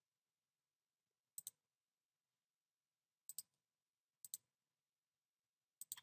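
Four faint computer mouse clicks spread over the few seconds, each heard as a quick double tick of the button pressing and releasing.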